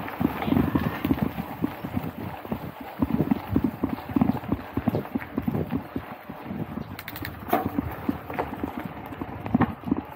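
Bicycle riding over a rough dirt track: a dense, irregular rattle and knocking of the bike and its mounted camera over bumps, with a few sharper clicks about seven seconds in.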